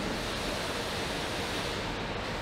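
Steady, even machinery and ventilation din of a car assembly hall, with no distinct clicks, tools or tones standing out.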